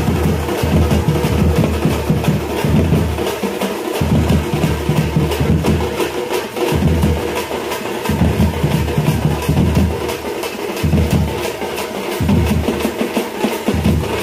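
Fast drumming with rapid, sharp strokes throughout, over deep booming beats that come in phrases of about a second or so, with short breaks between them.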